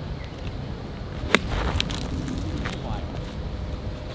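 A golf club striking a ball off a cart path: one sharp, crisp click about a second and a half in, over a steady low rumble of wind on the microphone.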